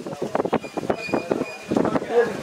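Sawmill band saw running, with an irregular rattling clatter and a faint, thin high tone partway through.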